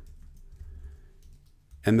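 A few faint computer keyboard keystrokes during a code edit: pasting a line and deleting a character.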